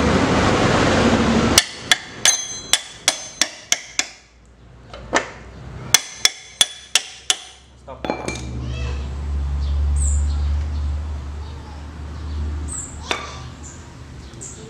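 A hammer tapping lightly on metal: a run of about seven quick taps, a pause with a single tap, then about five more, each with a short metallic ring. A part on a Yamaha Vixion's rear swingarm and wheel assembly is being driven slowly into place. The taps are preceded by about a second and a half of steady rushing noise.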